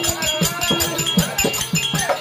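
Live Therukoothu accompaniment: a hand drum struck at a quick steady beat, about three strokes a second, many strokes dropping in pitch, over a held harmonium drone, with a high ringing tone repeating along with the beat.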